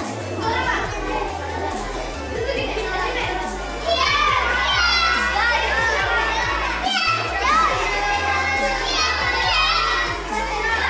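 A group of children shouting and cheering, growing louder about four seconds in, over background music with a steady bass line.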